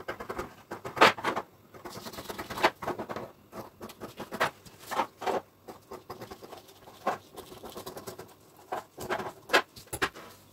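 Scissors cutting through several folded layers of tulle along a paper pattern: a run of irregular short snips with crisp rustling of the net and paper, the sharpest about a second in.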